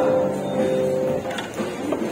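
Grand piano notes held and ringing, then dying away over about the first second and leaving only a faint tail.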